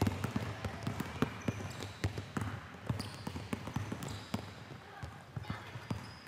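Several basketballs being dribbled on a hardwood gym floor, with many quick bounces at an uneven pace as different players' dribbles overlap.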